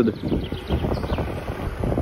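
Wind buffeting the microphone while riding a bicycle along a paved road: an uneven, gusting rumble with no clear tone.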